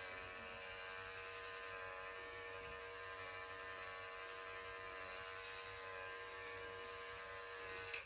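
Mary Kay Skinvigorate sonic facial cleansing brush running with a faint, steady buzz as its wet bristle head is worked over an orange peel; the buzz stops at the very end.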